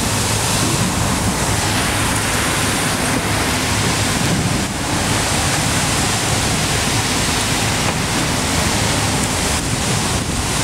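Wind buffeting the microphone over choppy sea washing against a quay wall: a steady, loud noise.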